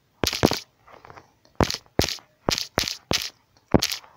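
Typing on a smartphone's on-screen keyboard: a run of about eight sharp taps, irregularly spaced, one for each letter entered.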